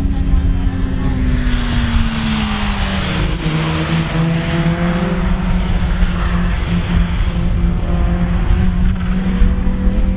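Renault Clio Sport's four-cylinder engine on a race track. Its pitch drops as the car slows into a corner about two seconds in, then holds steady, with tyre noise through the bend until about six seconds in.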